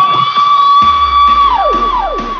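DJ shout sample: one long, high 'woooh' held on a steady pitch that falls off near the end, repeated by a fading echo, over a deep bass boom that comes in about a second in.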